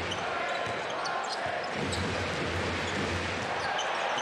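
Steady arena crowd noise over a basketball being dribbled on a hardwood court during a televised game.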